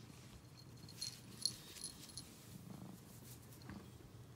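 Tabby cat purring steadily, with a few light metallic jingles between about one and two seconds in.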